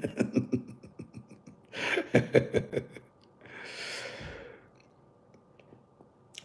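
A man's short chuckle with small mouth or handling clicks, then a long breathy exhale about three and a half seconds in.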